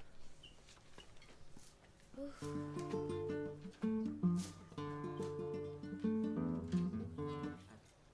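Acoustic guitar being played: after a couple of seconds of quiet, a short passage of plucked notes and chords that stops shortly before the end.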